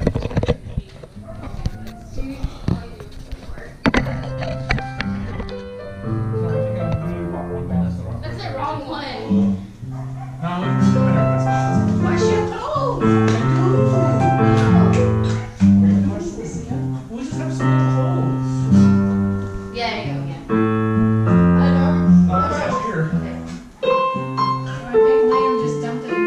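Digital keyboard playing a song in chords with an acoustic guitar along, starting softly about four seconds in and growing fuller and louder about ten seconds in.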